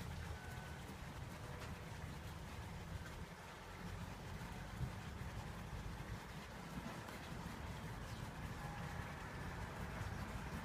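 Quiet steady low rumble of background noise, with faint scrubbing of a bristle brush working oil paint into canvas.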